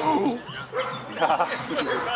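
German Shepherd barking repeatedly in short, quick barks while running an agility course.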